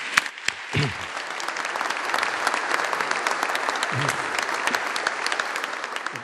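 Audience applauding, a dense steady patter of many people clapping that tapers off near the end.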